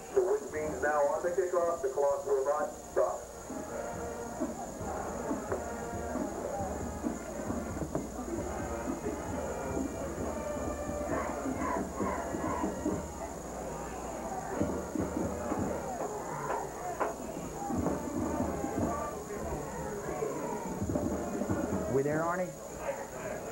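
Football stadium crowd noise: many voices cheering together over music, with a louder burst of shouting in the first few seconds.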